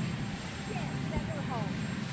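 Steady low engine rumble, with faint voices in the background.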